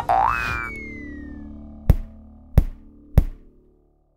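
Animated logo sting: a springy boing with a rising glide and a falling whistle, over a held musical chord. Then three sharp percussive hits about two-thirds of a second apart, fading out near the end.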